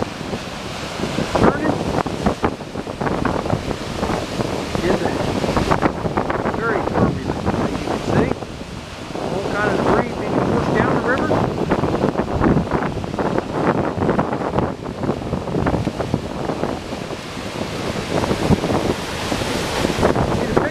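Strong wind buffeting the microphone over the steady rush of a flood-swollen river and water pouring over a low dam's spillway, the wind coming in uneven gusts.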